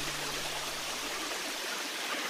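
Steady rushing of a shallow river flowing over rocks.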